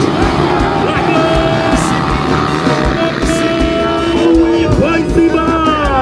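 Several motocross dirt-bike engines revving together, rising and falling in pitch, with music playing over them.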